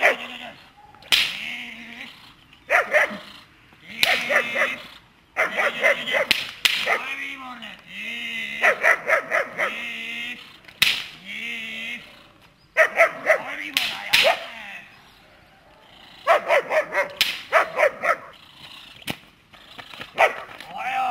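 German Shepherd dog barking in repeated bursts of several quick barks, with high, wavering whines between the bursts.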